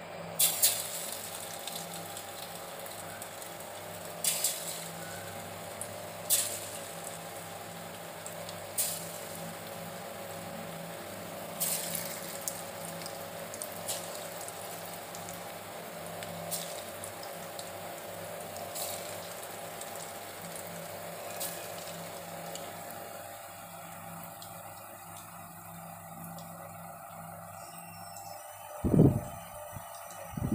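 Chicken pakoda pieces deep-frying in hot oil in a kadai: a steady sizzle with sharp crackles and spits every couple of seconds in the first half, as the pieces go in, settling to an even sizzle later, over a steady low hum. Two low thumps near the end.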